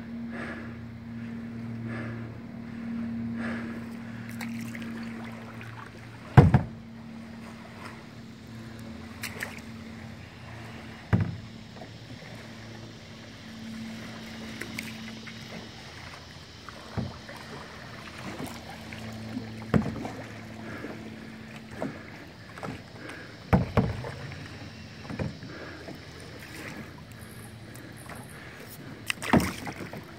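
A canoe on moving floodwater: a handful of sharp wooden knocks against the canoe's hull, the loudest about six seconds in, over a steady low hum and faint water noise.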